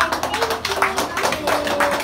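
Audience clapping, quick and uneven.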